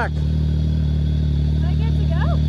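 Can-Am Maverick X3 side-by-side's three-cylinder Rotax engine idling steadily in neutral, a constant low hum with no revving.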